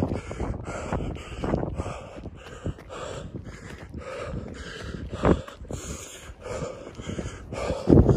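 A runner panting hard on an uphill run, with steady footfalls and wind buffeting the phone's microphone. There is one louder thump a little past the middle.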